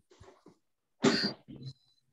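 A person coughing about a second in: one short sharp cough, then a smaller second one.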